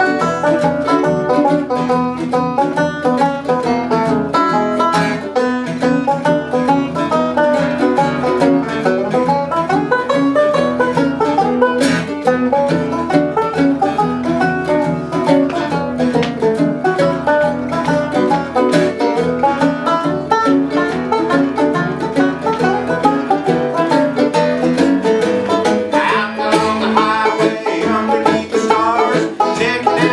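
An instrumental break in a live bluegrass song: a five-string banjo picking quick runs over strummed acoustic guitar backing. The texture changes about 26 seconds in.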